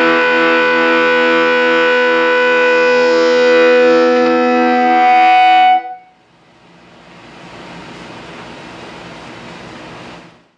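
Distorted electric guitar chord ringing out through a cranked Laney Cub 8 tube amp driven by a distortion pedal, into an Eminence Patriot speaker. One high note swells louder before the strings are muted about six seconds in. A steady amp hiss then rises and holds.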